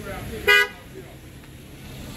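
A car horn giving one short toot about half a second in.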